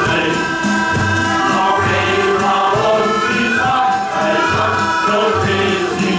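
Men's shanty choir singing a sea song with instrumental accompaniment, a low bass note recurring regularly under the voices.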